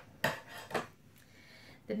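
A pair of metal-bladed scissors put down on a hard tabletop, clattering with two sharp clacks about half a second apart.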